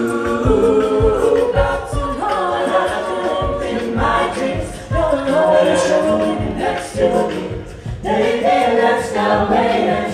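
Mixed-voice a cappella group singing in close harmony, with short low thumps keeping a steady beat about twice a second underneath.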